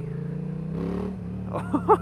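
A 2015 Yamaha MT-07's 689 cc parallel-twin engine running through a full Leo Vince exhaust, pulling under throttle with its pitch rising for about a second, then dropping as the throttle eases or the rider changes gear.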